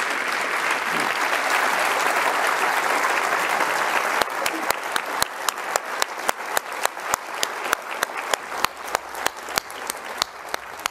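Audience applauding in a hall. About four seconds in the dense applause thins out, leaving one person's sharp, close claps, about three a second, over lighter crowd clapping.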